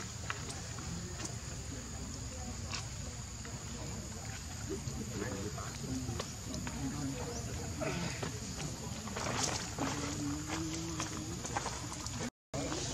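Faint background voices murmuring, with scattered soft clicks and one longer held voiced sound near the end.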